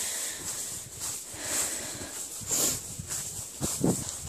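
A horse walking along a trail strewn with dry fallen leaves: irregular hoof steps crunching and rustling through the leaves, a few steps standing out.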